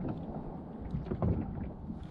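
Small waves lapping against the hull of a Pelican Bass Raider fishing boat in a steady low rumble, with wind on the microphone.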